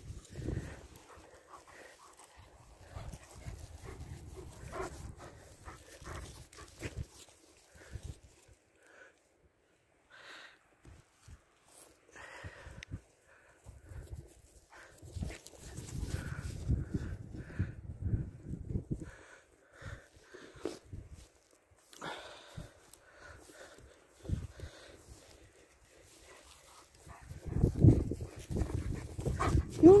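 German Shepherd dogs panting close by during ball play, with scattered low rumbles that are loudest near the end.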